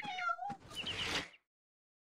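A cartoon cat meows once, a falling call, followed by a few short high bird chirps.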